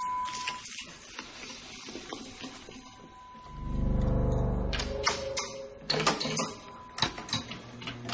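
Quiet film soundtrack. About three and a half seconds in, a low musical note swells up and fades over about a second and a half, followed by a few sharp clicks and knocks.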